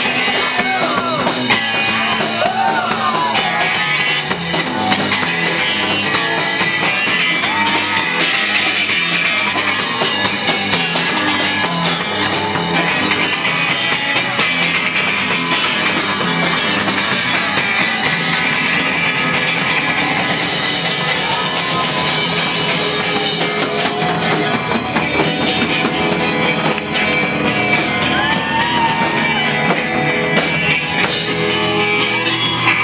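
Rock music with electric guitars and drums, a voice singing at times.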